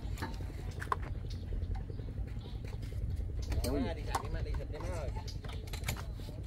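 A vehicle engine idling as a low, steady rumble, with faint voices a few seconds in.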